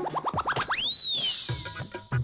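A comic film-score sound effect: a quick run of rising whistle-like chirps that speed up, then one long gliding whistle tone that rises and falls away. Background music with a beat comes back near the end.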